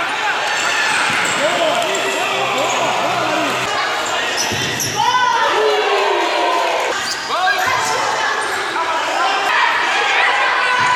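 Sounds of a children's futsal match on an indoor court: the ball being kicked and bouncing, shoes squeaking on the floor, and voices calling out around the hall.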